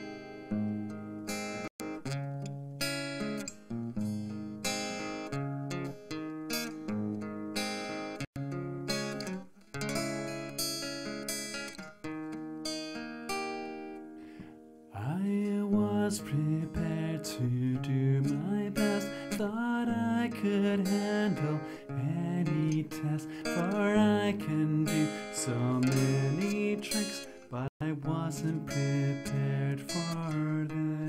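Steel-string acoustic guitar played as a song intro: separate picked notes at first, then louder and fuller from about halfway through.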